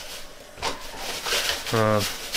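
Plastic bags rustling and crinkling as a hand pushes them aside in a wooden chest, in two louder spells, with a man's voice starting near the end.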